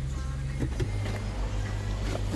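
Steady low hum of a 2018 Volkswagen Atlas running while parked, heard inside the cabin. Its pitch shifts slightly just under a second in.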